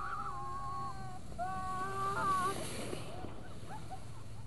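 Several people yelling long, drawn-out calls from a distance, two overlapping rounds of held shouts, with a brief hiss partway through.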